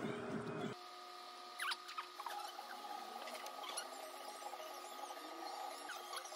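The background music cuts off abruptly about a second in. What follows is a quiet, steady, sustained backing tone with short, high squeaky chirps scattered over it, like cartoon squeak sound effects.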